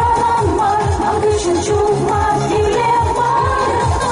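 Two women singing a pop song into microphones over music with a steady drum beat, amplified through stage PA speakers.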